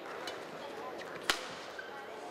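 A badminton racket hits the shuttlecock once, a single sharp crack about a second and a quarter in, over steady background noise in the hall.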